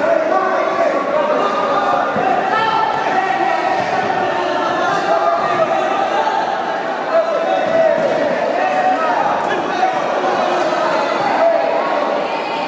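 Spectators shouting and talking over one another, echoing in a large indoor hall, with a few short thuds.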